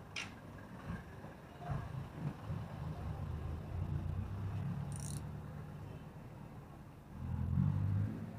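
Street traffic: a steady low engine rumble from passing vehicles. There is a brief hiss about five seconds in, and the rumble swells louder near the end.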